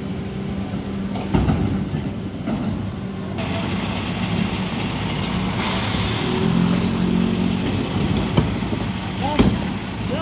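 Diesel engine of a Mercedes-Benz Econic refuse truck with a Geesink body running steadily, with a knock about a second in as an 1100-litre wheeled bin is pushed to the rear lift. A short hiss of air comes about six seconds in, and there are sharp clicks near the end.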